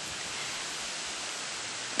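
Steady, even hiss with nothing else over it.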